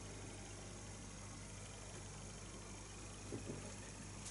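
Quiet room tone: a steady low hum and faint hiss, with a couple of faint brief sounds a little past three seconds in.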